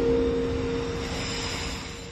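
A steady rushing drone with a low, even hum under it, swelling in just before and slowly fading away.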